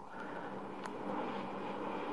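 Faint steady background noise with a low hum, and a single faint click just under a second in.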